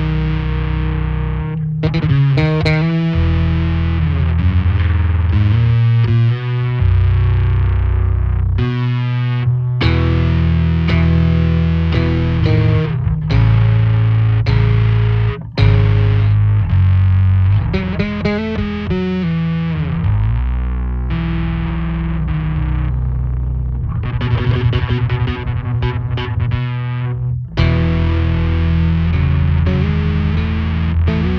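Electric bass guitar played fingerstyle through a Blackstar Unity Elite U700H head and U115C 1x15 cabinet: deep held notes mixed with quick runs, with short breaks about 9, 15 and 27 seconds in.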